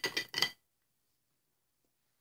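Stainless-steel cap clinking against the neck of a glass cold-brew bottle as it is put on: a few short clinks within the first half second.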